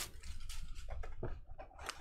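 Faint scratching and a few light taps of cardboard trading-card boxes being handled on the table.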